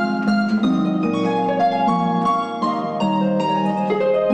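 Concert pedal harp played solo: a quick, even stream of plucked notes over lower notes left ringing.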